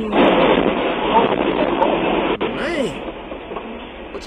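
Semi-truck crashing into an overpass support, caught on dashcam audio: a sudden loud crash and crunch of metal that dies away over about two and a half seconds. A voice cries out in its later part.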